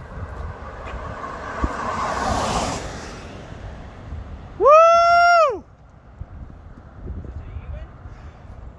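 A car passing on the road, its tyre and engine noise swelling and fading over the first three seconds. About four and a half seconds in comes the loudest sound: a single high-pitched "whoo" cheer lasting about a second, its pitch sliding up at the start and down at the end.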